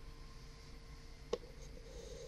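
Faint steady electrical hum, with one sharp click a little over a second in, followed by a brief soft rubbing.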